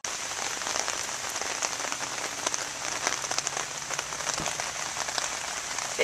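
Rain falling on a parked car: an even hiss dotted with many small drop ticks. It starts abruptly and holds steady throughout.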